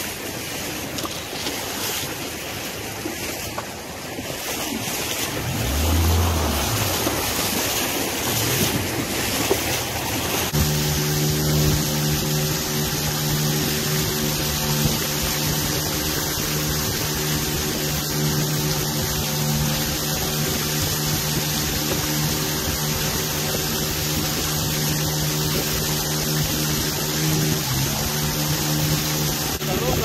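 Rushing shallow river water and wind on the microphone. About ten seconds in, an outboard motor driving a dugout canoe starts abruptly and runs steadily at one pitch, shifting slightly near the end.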